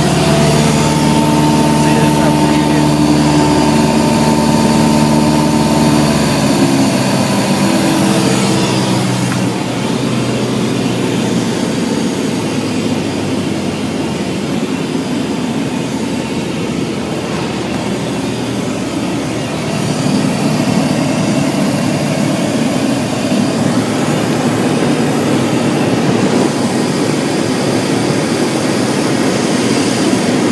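Single-engine propeller plane's piston engine and propeller, heard from inside the cabin as a steady drone. Its steady tones die away within the first ten seconds, leaving a steady rush of engine and wind noise that grows louder about twenty seconds in.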